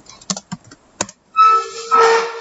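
Computer keyboard typing: a few separate key clicks in the first second as a terminal command is finished and entered. About a second and a half in, a steady held tone with a hiss over it begins, louder than the keys.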